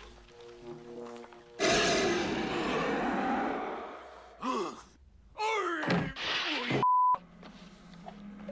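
A sudden heavy thud about one and a half seconds in, trailing off in a rushing noise that fades over a couple of seconds. It is followed by cries and a short, high beep near the end.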